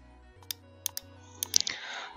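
Computer mouse button clicking: five sharp clicks, a single one and then close pairs, over a faint steady low hum.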